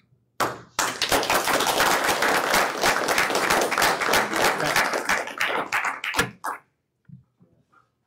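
Audience applauding for about six seconds, dying away near the end.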